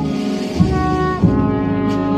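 Procession brass band, with sousaphones on the bass line, playing a slow processional march in held chords that change about every two-thirds of a second, each change marked by a low thump.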